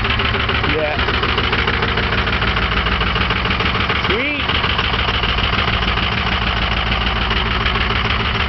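Engine of a 2005 Ford flatbed truck idling steadily after a cold start, with a brief chirp about four seconds in.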